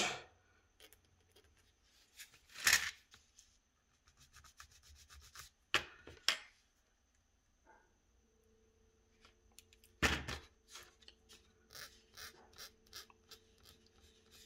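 A small metal needle file scraping a tiny cast metal part in short, irregular strokes to smooth off casting blemishes, with a few louder scrapes among them. The sound is fairly quiet.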